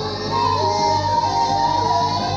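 Live band music: a high, yodel-like sung phrase that repeats about every second and a half, over a steady electric bass line.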